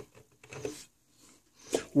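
Faint, brief scratching of a screwdriver tip against the plastic oscilloscope case, prying at the warranty-void sticker.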